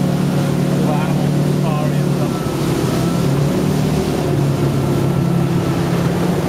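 Ski boat's engine running steadily at towing speed, a low even hum.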